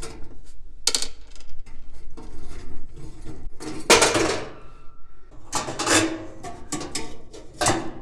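Metal clinks and clatter as a gas oven's igniter is worked loose from its mount beside the steel burner tube and lifted out. Irregular sharp knocks, the loudest about four seconds in and another cluster around six seconds.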